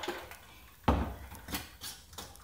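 A glass Mason jar holding a cocktail and ice cubes is set down on a countertop with one sharp thump about a second in, followed by two light clicks.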